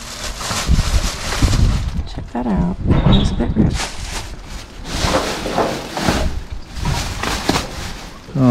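Plastic rubbish bags rustling and crinkling as they are pulled and rummaged through by hand, in irregular bursts, with brief low voices in between.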